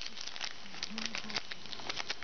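Foil wrapper of a football trading-card pack crinkling and crackling as it is torn and pulled open by hand, a quick run of small crackles.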